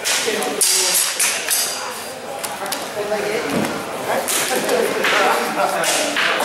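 Sparring blades clashing and clattering, with a cluster of sharp strikes starting about half a second in and more from about four to five and a half seconds in. Voices echo through a large hall.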